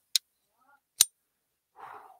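Two sharp clicks of a folding pocket knife being flipped, about a second apart, the second the louder.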